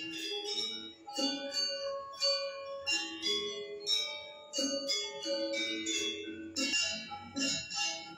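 Music of quick runs of struck, ringing bell-like notes over lower sustained tones.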